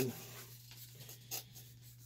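Faint scraping and light clicks of a screwdriver and hands working the servo mount on a plastic Axial SCX10 II crawler chassis, over a steady low hum.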